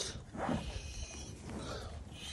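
A Scottish Highland bull's faint breathing close by as he grazes.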